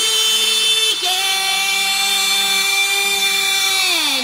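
A buzzy synth note held without drums in a breakdown of a bounce (hard dance) mix; it steps down in pitch about a second in and slides down near the end.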